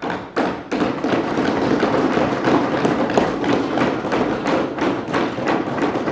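Many legislators thumping their desks with their hands in approval, a dense, continuous clatter of thuds. It is the house's customary applause, here for the announcement that no new tax is proposed.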